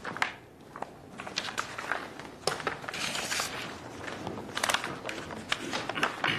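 Room noise of people shifting and handling things in a meeting chamber: scattered, irregular clicks and knocks, with a longer rustle about three seconds in.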